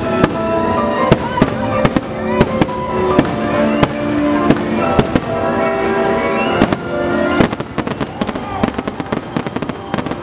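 Fireworks bursting with repeated sharp bangs over a show's music soundtrack. About seven and a half seconds in the music stops, leaving a rapid, dense string of bangs and crackles.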